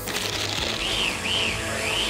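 Small electric chopper (a hand-blender chopper bowl) running, its blades whirring through meat to make a coarse farce. The motor noise starts suddenly, and its whine rises and falls a few times as it works.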